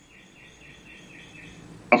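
Faint bird chirping in the background: a short note repeated about four times a second over low background noise.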